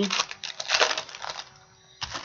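Trading cards and their foil pack wrappers being handled: a run of short crinkles and clicks that dies away after about a second and a half, with the tail end of a laugh at the very start.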